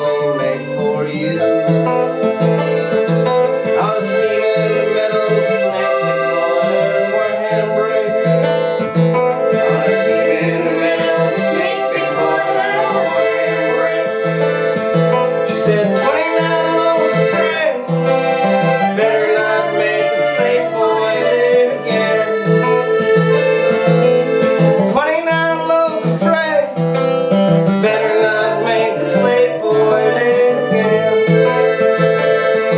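Instrumental break of a live acoustic roots band: a strummed acoustic guitar and an accordion, with a lap-played slide guitar gliding up between notes several times.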